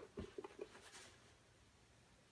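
Faint handling of a leather handbag: a few light rustles and soft taps in the first second as the flap is held open and the lining shown, then near silence.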